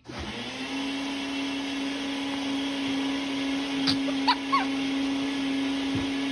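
A household appliance's electric motor switched on. It spins up in about half a second, then runs steadily: a constant hum over a rushing noise.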